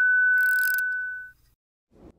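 Steady high-pitched test-tone beep of the kind played with television colour bars, fading out a little over a second in, with a brief burst of static hiss about half a second in.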